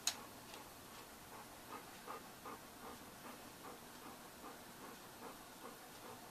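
A dog panting softly, with faint even breaths about two to three a second, after a short click at the very start.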